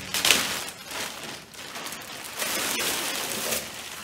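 Plastic poly mailer bag crinkling and rustling as it is opened and the contents are pulled out, with a sharp loud crackle just after the start.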